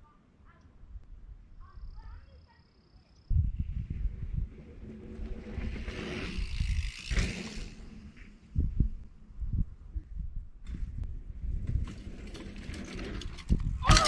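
Mountain bike riding in over dry dirt toward a dirt jump, its tyres on the ground heard through an uneven rumble that starts suddenly a few seconds in. It ends with a sharp knock as the bike reaches the lip of the jump.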